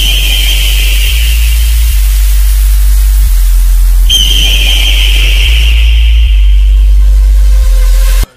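Bass-boosted DJ soundcheck music in its bass test: very loud sustained sub-bass notes that step to a new pitch every second or so, with a thin high whine laid over it at the start and again about four seconds in.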